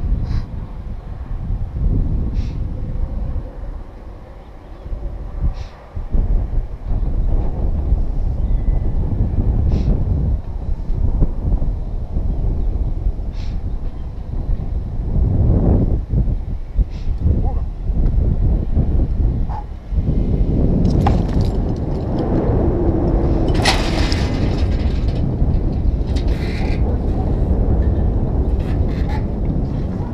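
Wind buffeting an action camera's microphone high on an open chimney top: a loud, steady low rumble, with a few sharp clicks and, from about twenty seconds in, bursts of brighter noise.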